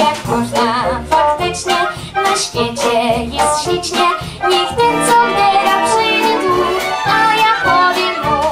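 An 11-year-old girl singing a prewar Polish film song into a microphone, with a salon orchestra of violins and rhythm section accompanying her.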